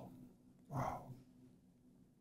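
A man's brief, quiet vocal sound about three quarters of a second in, over a faint steady hum.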